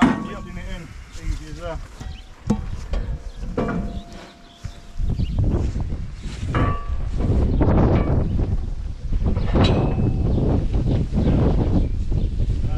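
A few sharp metal knocks as the firewood processor is handled, then from about five seconds in a loud, steady low rumble of wind on the microphone.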